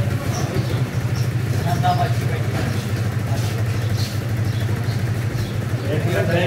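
A small engine idling steadily, a low even drone with voices talking faintly over it.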